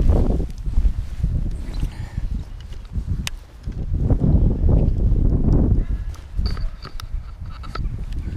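Wind rumbling on a head-mounted action camera's microphone, mixed with clothing and grass rustling as the wearer gets up and moves along a bank. There is a sharp click about three seconds in and a few light clicks near the end.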